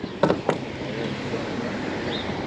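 Two short knocks close together, then steady outdoor background noise from the open water around a small boat.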